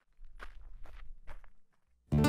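Footsteps of two hikers walking on a rocky trail: about half a dozen faint steps, roughly two a second, stopping shortly before the end.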